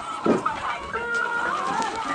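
Chickens clucking, with one dull thump about a third of a second in.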